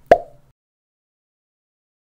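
A single short click-like pop from a subscribe-button sound effect, just after the start.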